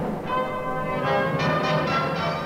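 Film score music of bell-like chimes struck one after another, ringing on over a held low note.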